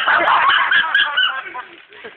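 Several young voices shrieking and yelling over one another, loud and excited, dying down in the last half second.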